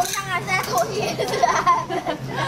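Young children talking and playing, their high-pitched voices overlapping.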